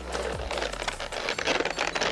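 Clear plastic blister packaging crinkling and clicking as it is handled, a rapid run of small irregular crackles.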